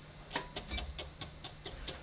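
Fan-shaped natural-hair brush dabbed repeatedly onto textured watercolour paper: a series of faint, soft taps.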